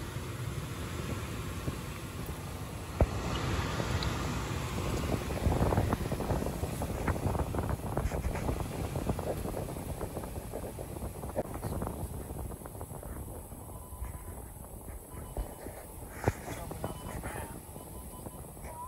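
Inside the cab of a Volkswagen Amarok ute driving along a rough dirt bush track: a low rumble of tyres on gravel, broken by frequent knocks and rattles from the suspension and body. It builds through the middle and eases off toward the end.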